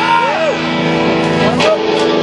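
Electric guitar's final chord ringing on steadily through the amplifier, while a man's voice makes short sounds that glide up and down in pitch, like laughter.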